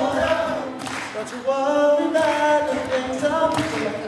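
A cappella group singing: several unaccompanied voices holding long notes in harmony, moving together from note to note.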